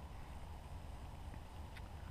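Low, steady background rumble with a couple of faint small clicks near the end as a metal snap clip on a wire trace is handled.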